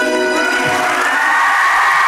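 The song's final held chord breaks off about half a second in, and an audience bursts into applause and cheering that grows louder.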